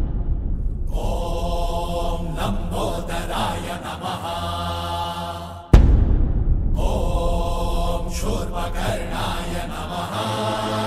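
Background devotional music: a chanted Ganesh hymn with a deep booming drum hit about six seconds in.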